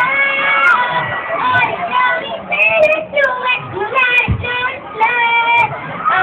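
A high-pitched voice singing over a sound system, in short held phrases with pauses between them.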